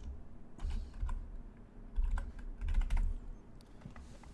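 Typing on a computer keyboard: short bursts of keystrokes with pauses between.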